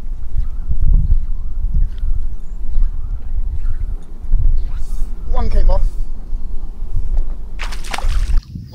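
Wind buffeting the microphone: a heavy, gusting low rumble, with a short voice about five and a half seconds in.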